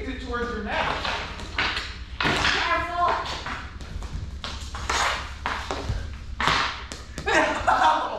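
Floor hockey play on a bare concrete floor in a large, echoing room: sticks and ball clacking and tapping in quick, uneven knocks, with scuffling feet and voices calling out in between.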